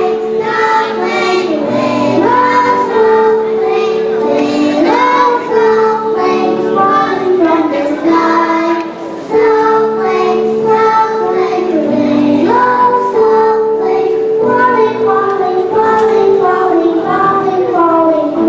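A group of young children singing a song together to instrumental accompaniment, with the sung melody over steady held notes and a brief drop in level just before halfway.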